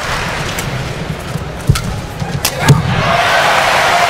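Arena crowd noise with a few sharp racket strikes on a badminton shuttlecock, the last two in quick succession about two and a half seconds in.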